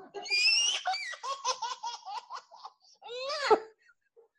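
Laughter, starting very high-pitched, then going into a rhythmic run of ha-ha pulses about six a second. A short spoken "no" comes near the end.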